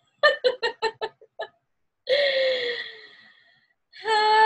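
A woman laughing in a quick run of short bursts that die away, then one long note that slides down slightly and fades out over about a second and a half.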